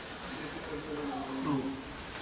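Faint, wavering voice-like sounds, pitched and weaker than the lecturer's voice.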